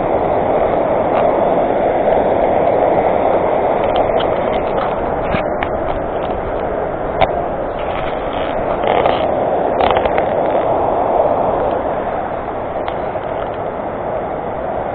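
Steady rush of a glacier-fed mountain stream running over rapids, easing slightly toward the end, with a few light clicks over it.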